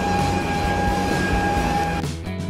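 Steady high whine over a low rumble from an aircraft and its ground equipment, heard from inside a jet bridge at the plane's door.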